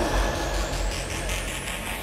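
Hardstyle track in a quieter breakdown: a rising synth sweep climbs steadily in pitch over a noisy wash and a low drone, with no kick drum.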